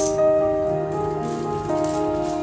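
Background music of held, sustained notes, the chord changing about two-thirds of a second in and again near the end.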